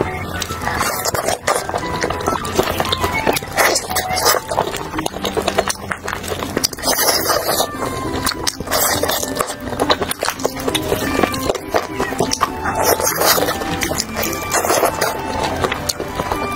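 Close-miked eating sounds, many short irregular clicks and smacks of chewing grilled chicken, over background music.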